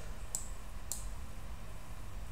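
Two quick computer mouse-button clicks about half a second apart, over a faint low hum.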